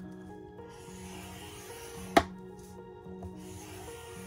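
Plastic scoring tool drawn along a scoring board's groove, scoring cardstock with a faint rubbing scrape, and a single sharp click about two seconds in. Soft background music with steady held tones plays throughout.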